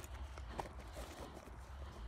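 Faint, scattered clicks and taps from a dog standing close by, over a low steady rumble.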